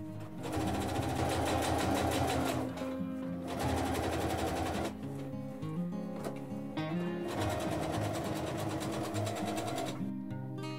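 Minerva domestic sewing machine stitching a zipper into a bag, running in three bursts with short pauses between: the first from about half a second in to near three seconds, a short one around four seconds, and a longer one in the last few seconds.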